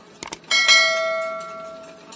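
Subscribe-button sound effect: two quick clicks, then a single bell ding that rings out and fades over about a second and a half.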